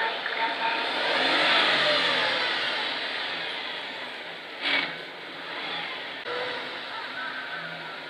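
A vehicle passing by, its sound swelling over the first two seconds and then slowly fading, with one sharp knock about halfway through.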